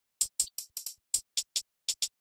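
Programmed hi-hat sample playing on its own in a drum pattern: about eight short, bright ticks in two seconds, unevenly spaced, with silence between them.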